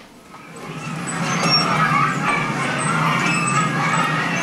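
Recorded audio track for the English textbook story, played from the laptop through the room's speakers. It starts about half a second in and rises over the first second to a steady level.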